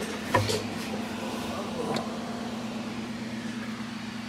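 Steady low background hum, with a light knock about a third of a second in and a fainter click near the middle, typical of parts being handled.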